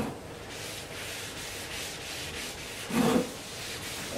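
A cloth rubbing boiled linseed oil into a wooden shovel handle, in repeated strokes along the wood. A brief, louder low sound comes about three seconds in.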